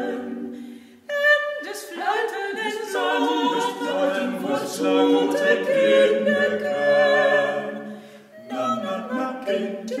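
A four-voice a cappella ensemble of two women and two men singing a Dutch Christmas carol in parts. A phrase dies away about a second in and the voices re-enter strongly, holding chords until a short breath just past eight seconds, then singing on.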